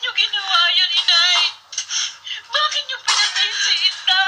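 A high-pitched singing voice with music, in short phrases with a wavering, vibrato-like pitch and brief pauses. It sounds thin, with no bass.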